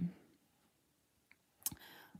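Mostly near silence, with a faint tick about a second in and a short, sharp click near the end followed by a soft hiss.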